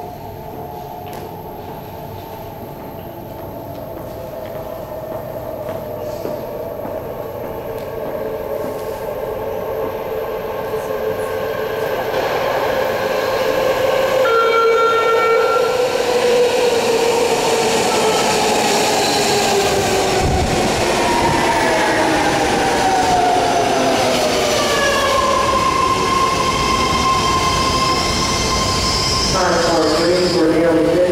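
BART train arriving through the subway tunnel and pulling into the platform: a rumble that grows louder for about fifteen seconds, then a whine that falls in pitch as the train slows alongside the platform.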